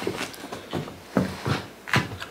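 A small Jack Russell–type terrier chasing and snapping at soap bubbles: a quick series of short, soft sounds, about three a second.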